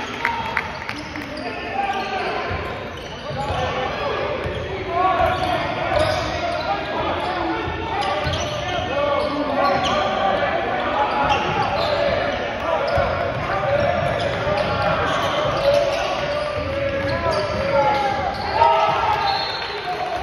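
Basketball dribbling on a hardwood gym floor during live play, with voices throughout, echoing in a large gymnasium.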